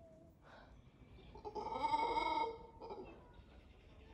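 A mantled howler monkey giving one short call of about a second, starting a little after one second in, with fainter brief sounds before and after it.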